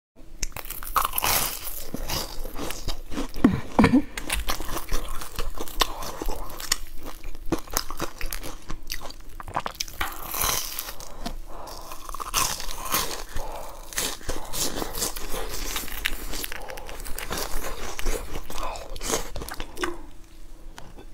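Biting and chewing into crusty fried red bean paste buns: repeated crunches of the crisp crust with wet mouth sounds, loudest a few seconds in.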